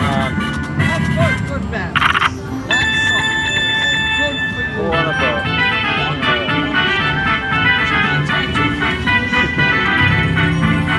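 Konami Treasure Voyage slot machine playing its bonus-round sounds: a short burst as the reels land about two seconds in, a held electronic chime, then from about five seconds a fast run of short tones as a win counts up on the meter.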